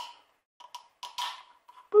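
Small clicks and scrapes of an eggshell pressed onto the piercing pin in the base of a plastic measuring cup, with a short breathy exhale about a second in.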